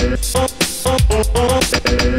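Late-1980s electronic club dance track, an instrumental stretch with no vocal: a steady beat under short repeated synth notes.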